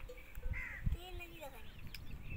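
Crows cawing a few times, harsh arching calls, mixed with faint voices, and a single knock midway.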